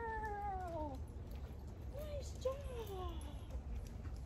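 Whine-like animal cries, each falling in pitch: one long cry, then a short one and a longer one about two seconds in.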